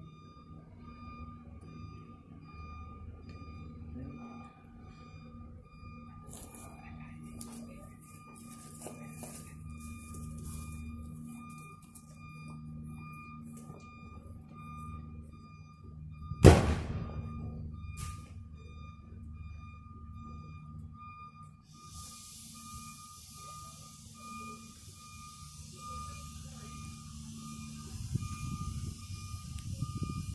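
One loud, sharp shot from a hand-held launcher fed by a canister carried on the officer's back, with a short ringing tail and a smaller crack about a second and a half later. A faint pulsing high tone sounds under it, and a steady hiss comes in about two-thirds of the way through.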